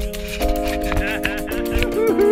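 Background music: held chords that change twice, over a light, steady percussion rhythm.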